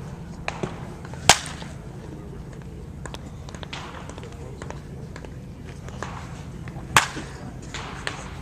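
Two loud, sharp cracks of a wooden baseball bat hitting pitched balls, about a second in and again near the end, with a few fainter clicks in between.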